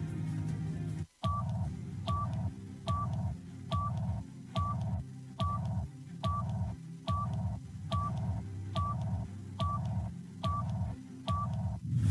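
Electronic countdown beeps from a TV break bumper: a short two-tone beep with a click, repeated about every 0.8 seconds, thirteen times, over a low bass music bed. The sound cuts out briefly about a second in, just before the beeps start.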